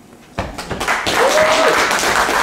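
Audience applause, breaking out suddenly about half a second in and going on as steady clapping, with a short rising-then-falling tone over it about a second in.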